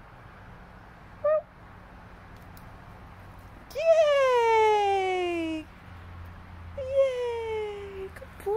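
Kitten meowing: a short meow about a second in, then a long drawn-out meow of about two seconds that slides down in pitch, and another falling meow near the end.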